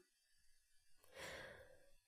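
Near silence, with one faint, short breath drawn by the reader a little past the middle.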